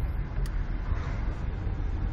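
Inside a moving car's cabin in city traffic: a steady low rumble of engine and road noise, with one faint click about half a second in.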